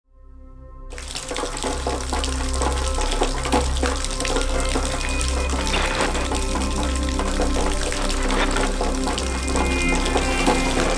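Background music with a steady wash of rain over it; the rain comes in about a second in.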